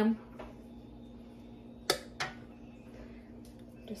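Glass canning jars being set into an aluminium pressure canner, with two sharp clinks close together about halfway through as glass meets the canner.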